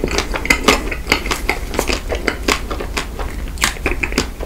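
Close-miked chewing of a white-chocolate-coated Magnum ice cream bar, the hard chocolate shell crackling between the teeth with wet mouth sounds. Irregular sharp crackles come several times a second.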